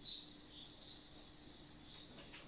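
Marker pen squeaking briefly on a whiteboard as a word is written, a short high squeak right at the start and fainter ones after, over a faint steady high-pitched drone.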